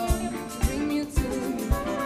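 Live big band playing a funk groove: a steady kick-drum beat about twice a second with held instrumental lines over it.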